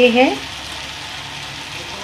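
Onion-tomato masala with powdered spices sizzling steadily in hot oil in an iron kadhai, an even frying hiss.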